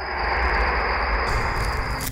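A loud rushing noise over a deep rumble, an added horror-film sound effect, that starts suddenly and cuts off after about two seconds.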